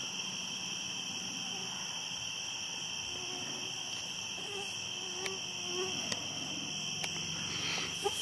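Night chorus of crickets: a steady, continuous high-pitched trilling at two pitches. A few faint clicks sound in the second half.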